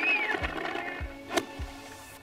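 Soft background music, with one sharp click a little after halfway through: an iron striking a golf ball from the fairway.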